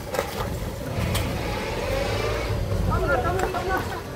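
An ambulance van's engine running as it drives slowly along a dirt road, with people talking nearby near the end.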